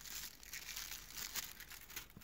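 Clear plastic packaging crinkling and crackling as it is handled, busiest in the first second and a half.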